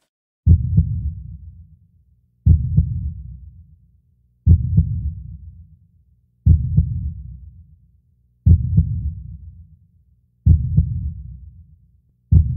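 Heartbeat sound effect: six deep double thumps, about two seconds apart, each dying away before the next.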